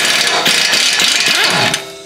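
Small pneumatic impact wrench, not turned up to full power, hammering on a rusted 11 mm catalytic-converter flange bolt. It stops about a second and a half in as the bolt breaks free.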